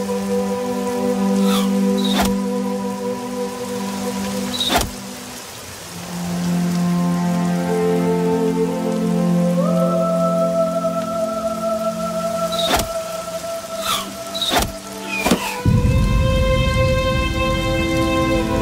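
Slow dramatic film-score music of long held chords over steady heavy rain. A few sharp cracks cut across it, and a deep rumble comes in near the end.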